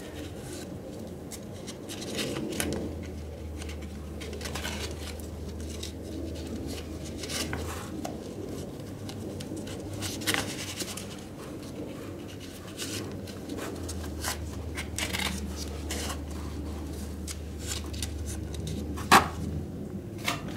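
Handling noise of a brown paper band being wrapped and pressed around a thin tree trunk: irregular rustling, scratching and small clicks. A low steady hum comes in twice, for about five seconds each time.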